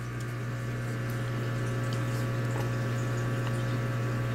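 A steady, low electrical hum with a faint higher whine over it, growing slightly louder. A few faint clicks come from the phone being handled.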